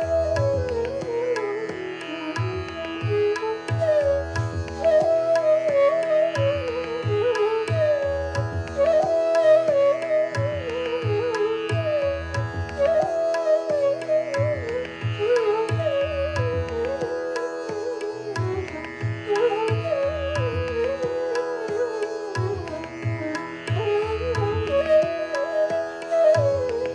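A bass bansuri (long bamboo flute) playing a medium-tempo bandish in raga Hameer set to ektaal, its melody moving in repeating, ornamented phrases over a steady drone. Tabla strokes keep the rhythmic cycle underneath.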